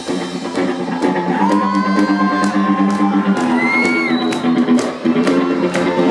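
Live rock band playing an instrumental passage: electric guitars over a drum kit, with a held note that bends up in pitch and back down a little before the middle.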